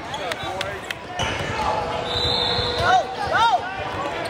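Basketball game sounds in a large gym: the ball bouncing a few times early on, a hubbub of players' and spectators' voices, and several short sneaker squeaks on the court about three seconds in.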